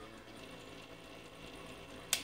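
Faint steady electrical hum with a faint high whine above it, from the powered-up inverter bench setup.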